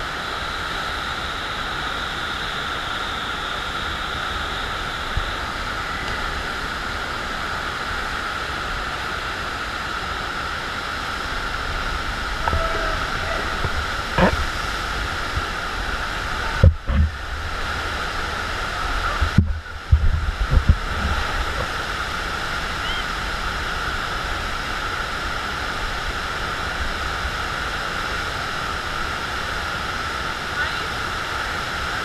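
Steady rush of water from a FlowRider sheet-wave surf machine, pumped water sheeting up the padded ride surface. A little past the middle it twice goes briefly muffled, with a few low thumps.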